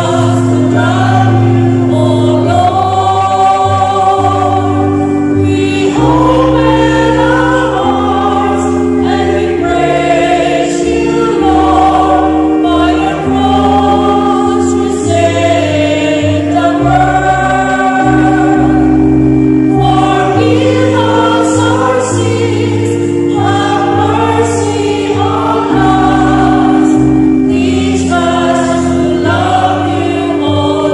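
A choir singing a slow liturgical entrance hymn for Lent, in verse after verse, over held accompaniment chords.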